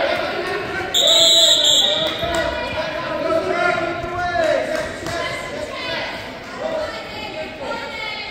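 A referee's whistle blows once, a short shrill blast about a second in, over coaches and spectators shouting in a large echoing gym.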